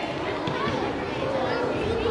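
Children's chatter: many young voices talking at once, with no single voice standing out.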